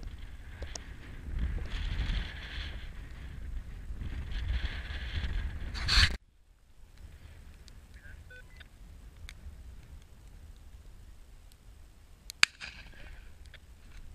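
Wind buffeting the camera microphone in a deep rumble, stopping abruptly about six seconds in. Fainter wind noise follows, with one sharp click near the end.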